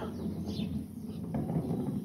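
Quiet outdoor background: a steady low rumble with a faint bird chirp about half a second in.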